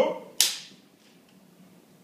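A single sharp clap, marking the take as a film clapperboard would.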